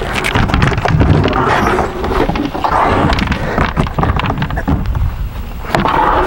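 Black plastic slide-out storage tray being worked free and dragged out of a camper's storage compartment, with repeated knocks and scrapes. Wind buffets the microphone throughout.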